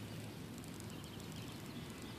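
Faint, steady outdoor background noise with no distinct sound standing out.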